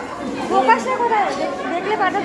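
Speech only: several people talking at once, overlapping chatter of voices.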